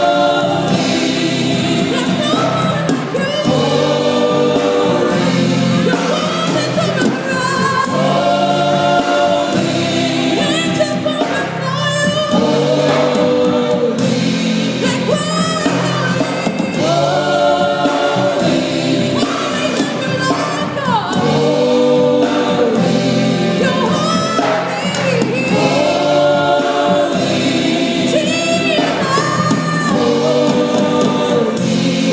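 Live gospel song: a female lead singer with a group of backing singers singing together, accompanied by a band with keyboard and electric guitar, amplified through a sound system.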